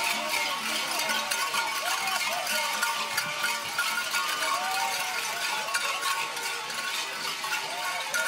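Dense, rapid metallic jingling and clinking from carnival dancers, with music faintly beneath.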